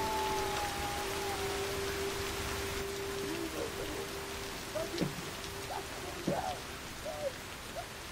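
Steady rain falling, with a low held tone under it that ends about five seconds in.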